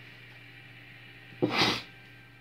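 A single short, sharp burst of breath from a person, about one and a half seconds in, over quiet room tone with a low steady hum.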